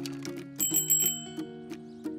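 A bicycle bell rung in a quick trill for about half a second, starting a little over half a second in, over steady background music.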